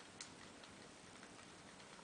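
Near silence with one light click a moment after the start and a few fainter ticks: the lever clamp of a curling iron being worked as a section of hair is rolled up the barrel.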